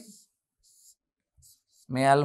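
Two faint, short scratches of a stylus drawing lines on an interactive whiteboard screen, in a pause between a man's words.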